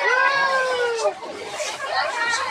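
A person's voice in one long drawn-out call lasting about a second, rising then falling in pitch, followed by quieter chatter.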